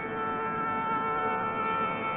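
The steady drone of a Carnatic concert's sruti (tonic drone), holding one buzzy pitch with no ornament while the melody pauses.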